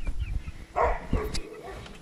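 A dog barking, with low knocks from the camera being handled.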